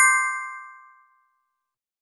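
A bright ding sound effect for a follow button being tapped: one chime of several ringing tones that fades away within about a second.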